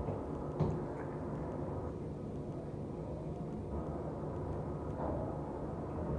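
Steady low hum inside an elevator car standing at its floor, with a faint knock about half a second in.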